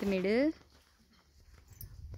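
A brief high, wavering voice-like cry in the first half second, then faint outdoor background noise.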